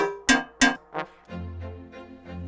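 A DAW rehearsal click track playing: sharp, pitched metronome clicks about three a second, called "horrible". The clicks stop about two-thirds of a second in, and after a second or so a sustained low backing-music bed comes in, with fainter ticks continuing under it.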